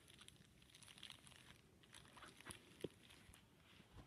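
Near silence with faint rustling of soft doll clothes being handled, and a single small click a little before the three-second mark.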